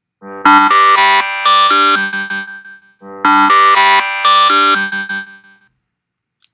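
A countdown timer's end alarm going off at zero: a short synthesized ringtone-like melody of quick stepped notes, played twice in a row.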